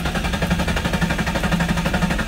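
Nissan 350Z's naturally aspirated VQ V6 engine heard from the driver's seat as the key is turned: a rapid, even pulsing over a steady low hum.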